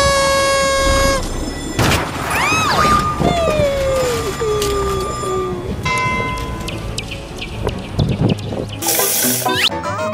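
Comedic cartoon sound effects layered over background music. A held horn-like tone opens it, followed by whistling glides up and down and a long falling slide, with a short burst of noise near the end.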